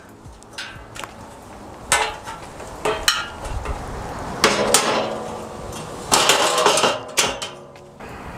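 Steel frame sections of a Harbor Freight folding utility trailer clanking and knocking against each other as the hinged front and rear halves are lifted and brought together: a series of metal clanks, some ringing briefly.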